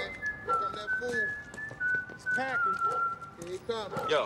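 A man whistling a slow tune in clear, held notes that step up and down in pitch, with short shouts of warning over it.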